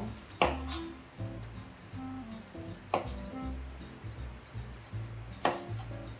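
A knife slicing through a lemon, the blade knocking on the cutting board three times, about two and a half seconds apart, over background music.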